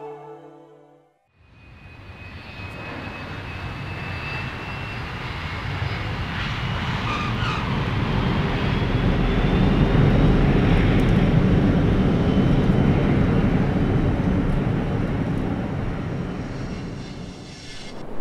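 Jet airliner engines on a runway: a broad rushing sound with a faint high whine that builds over several seconds, peaks about ten seconds in, then fades as the aircraft passes. A short tail of music fades out just before it.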